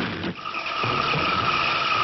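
A steady high screeching tone over a hiss, starting about a third of a second in as the preceding music breaks off: a tension sound effect laid into the film's soundtrack.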